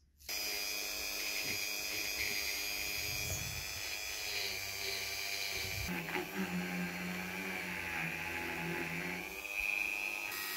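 Handheld rotary tool running at high speed with a small abrasive wheel on a brass faucet valve body. It starts suddenly about a quarter second in and holds a steady whine. A lower hum joins from about six seconds in.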